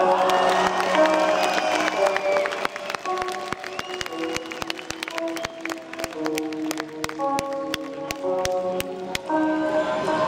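A live metal band's quieter passage: sustained notes that change pitch every half second or so over the PA, heard from within the crowd, with audience cheering and scattered claps.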